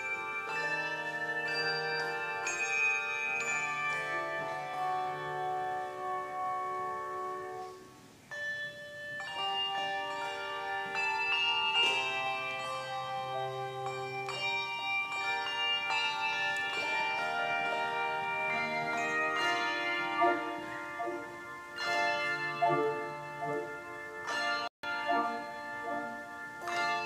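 English handbell choir ringing a hymn arrangement: many bells struck in chords, each note ringing on. The music thins to a brief pause about eight seconds in, then carries on.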